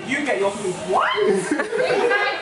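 Group conversation: people talking with chuckling laughter.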